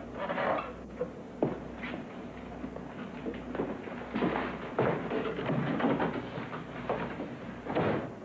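Scattered knocks and footsteps from people moving about a room, with a sharp knock about a second and a half in and another near the end.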